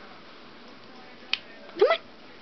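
A single sharp finger snap a little past a second in, given as a cue to the dog.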